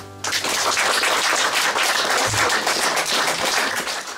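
Audience applauding at the end of a song, the clapping starting suddenly a moment in and going on steadily.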